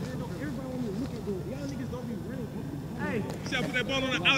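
Several people's voices talking over each other, no single speaker clear, with louder, higher-pitched voices coming in near the end.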